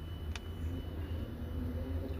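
Steady low background rumble with one faint click about a third of a second in.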